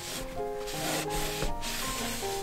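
Crumpled paper tissue rubbed back and forth along a wooden edge, working oil paint in as a wood stain, in several short strokes. Soft background music plays underneath.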